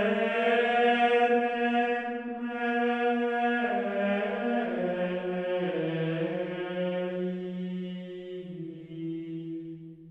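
Gregorian chant: a single unaccompanied melodic line of long held notes that step slowly from pitch to pitch, the phrase fading away near the end.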